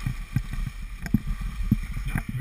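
Skis sliding over packed snow, with wind on the microphone and irregular low thumps, several a second, as the skis jolt over the snow.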